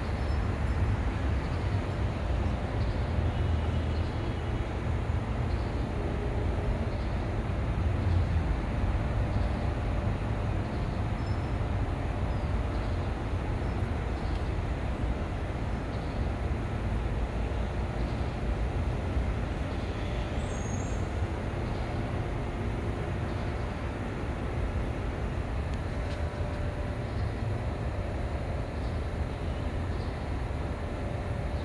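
Steady low rumble of outdoor background noise, unbroken and without distinct events.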